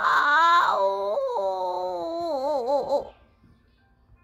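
A long, drawn-out cry of pain, "Yeeeeow!", in a cartoon voice for a scalded wolf, its pitch wavering and sliding before it trails off about three seconds in.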